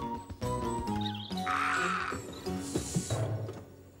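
Short title-card music sting, a melody of held notes stepping in pitch, with a couple of brief cartoon sound effects in the middle. It fades away near the end.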